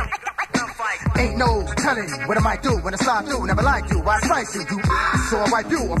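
Hip hop music with rapping over a beat; the bass drops out for about the first second, then comes back in.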